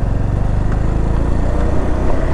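Motorcycle engine running steadily while being ridden, a continuous low drone with road noise.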